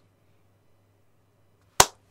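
Near silence, then a single sharp, loud knock or click near the end.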